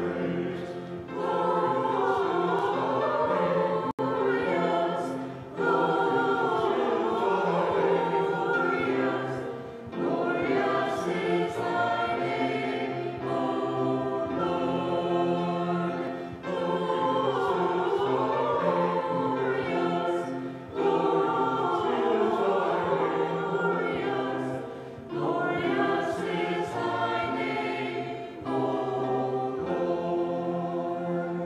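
A mixed church choir of men's and women's voices singing a choral piece in phrases of about four to five seconds, with short breaks between them.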